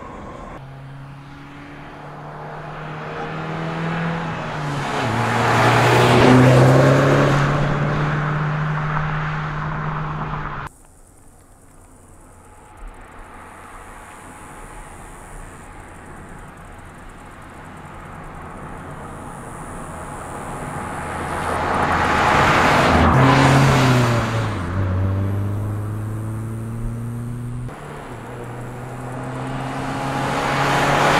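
2011 MINI Cooper S Countryman's turbocharged 1.6-litre four-cylinder driving past twice. Each time the engine note grows louder as it approaches and falls in pitch as it passes. The sound cuts off abruptly after each pass.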